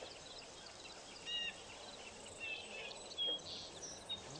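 Faint birds chirping: a few short, high calls spaced apart, the clearest about a second in, over a quiet outdoor background.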